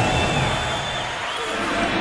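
Steady noise of a large arena crowd, a din of many voices cheering and talking at once.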